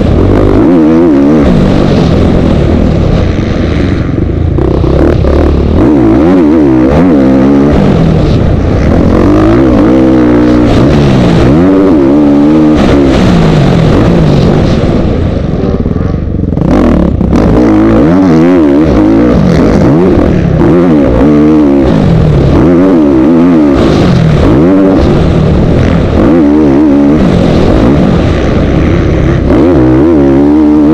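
Motocross dirt bike engine heard loud and close from on the bike, its revs climbing and dropping every second or two as the rider opens and closes the throttle through the turns and straights. The engine briefly drops off a little past halfway before pulling hard again.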